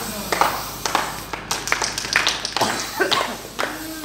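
A few people clapping unevenly, sharp separate claps rather than a steady applause, with excited voices mixed in near the end.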